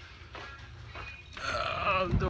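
A person's short, wavering vocal sound near the end, over a low steady hum.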